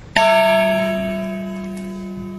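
A single strike on a metal percussion instrument, ringing on with several steady tones that slowly fade.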